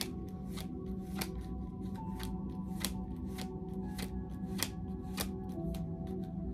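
Tarot deck being shuffled by hand, the cards snapping in a steady rhythm of about three a second, over soft ambient background music with long held tones.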